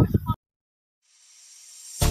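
The tail of a spoken phrase, cut off abruptly into digital silence, then a faint hiss swelling as background music fades in.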